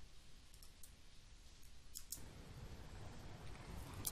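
A mouse click starts playback of a recorded sea-waves sound effect. Faint surf hiss then swells slowly over the last two seconds.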